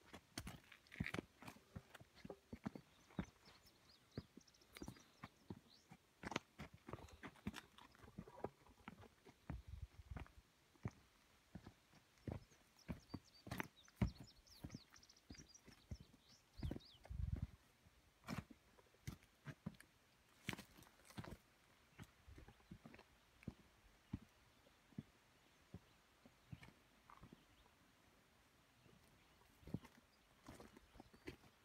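Hiking footsteps on a rocky dirt trail: faint, irregular crunches and scuffs on rock, grit and dry leaves, with a few duller thumps along the way.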